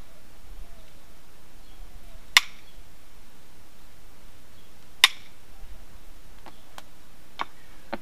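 Flintknapping by indirect percussion on a stone preform: two sharp strikes about two and a half seconds apart, then a few fainter clicks near the end.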